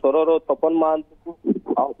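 Speech only: a man talking over a telephone line, with a short pause about halfway through.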